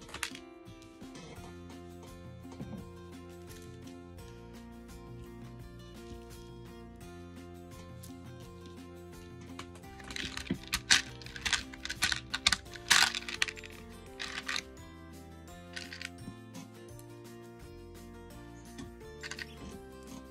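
Background music with steady, sustained notes. From about ten to fifteen seconds in comes a run of sharp clicks and clatter, the loudest sounds here, from beads being handled.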